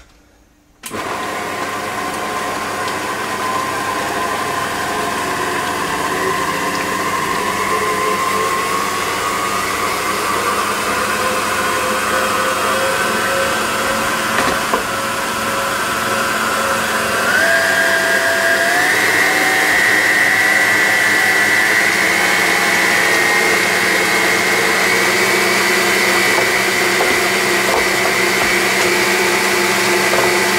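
An electric mixer beating cream cheese, mascarpone and ricotta together in a bowl. Its motor starts about a second in and runs steadily. Its pitch creeps up and then steps up twice past the middle.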